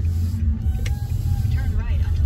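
Steady low rumble of a car's engine and road noise heard inside the cabin while driving, with a faint voice near the end.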